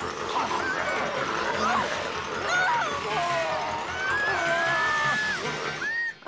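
Film soundtrack of an attack: a jumble of wordless voices crying out over dramatic music, cut off abruptly at the end.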